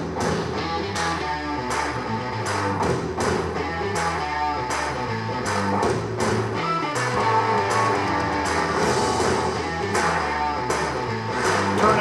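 Guitar rock song with a steady beat played through a pair of Rockville Rock Party 6 Bluetooth party speakers, picked up by the camera microphone.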